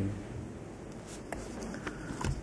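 Faint paper handling on a desk: papers shuffled and written on, with a few small ticks in the second half over a low room hum.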